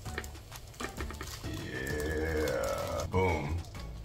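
Crinkling and crackling of a thin plastic protective film being handled and peeled off an acrylic dry-erase board, with a drawn-out falling tone about halfway through.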